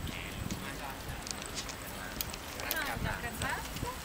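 An Irish setter's paws trotting on a paved sidewalk, a light patter of footfalls, with indistinct voices about three seconds in.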